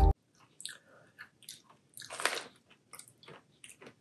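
Mouth chewing a roasted broad bean snack: soft, irregular crunches every few tenths of a second, the loudest about halfway through.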